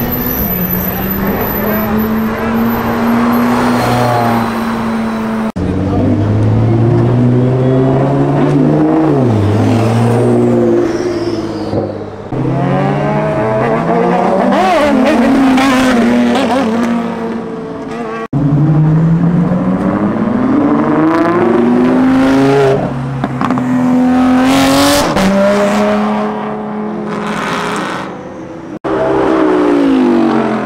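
Supercar engines revving hard as cars accelerate away one after another, among them a Lamborghini Huracán Performante and a sport motorcycle. The pitch climbs and drops again and again through the gears, in four loud stretches broken by abrupt cuts.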